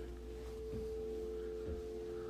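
A steady electrical hum of two held tones that switches on suddenly at the start and keeps going.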